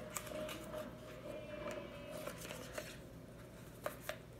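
Faint scattered clicks and rustling of a cosmetic product's packaging being handled, with a sharper click near the end.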